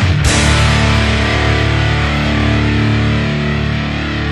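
Rock band music: a last crashing hit just after the start, then a full chord with guitar held and left to ring steadily.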